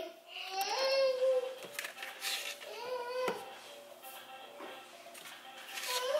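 An infant vocalizing in drawn-out, high-pitched fussy calls, one about a second long near the start and a shorter one around the middle, with faint music underneath.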